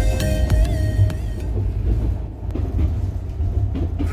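Background electronic music whose melody drops out about a second and a half in, leaving the low, steady rumble of a train running.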